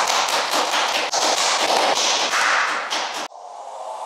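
A few people clapping their hands in quick, dense applause that cuts off suddenly a little past three seconds in, giving way to a quieter steady hiss.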